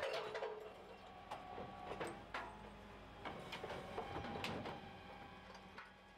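Refuse truck's rear bin lift emptying a four-compartment wheelie bin: faint, scattered knocks and clatter from the bin and lifter, about one every second, over a faint steady machine hum.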